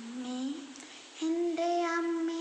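A boy singing a Marian devotional song unaccompanied. He sings a short note that slides up at its end, pauses, then holds a long steady note from a little past the middle.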